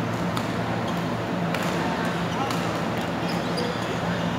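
Badminton rackets striking a shuttlecock in rally play: several sharp hits, the clearest about a second and a half in, over a steady low hum.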